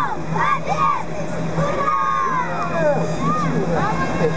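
A crowd of spectators shouting and cheering, many overlapping voices with long drawn-out calls of 'Ura!' (hurrah), over a steady low hum.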